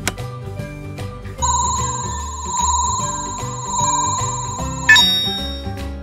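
Background music, with a click at the very start and a steady, slightly warbling electronic ringing tone laid over it from about a second and a half in, cutting off at about five seconds.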